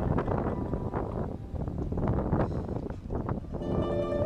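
Wind buffeting the microphone on a moving boat, with a low rumble underneath. Faint music fades out at the start and plucked-string music comes back in near the end.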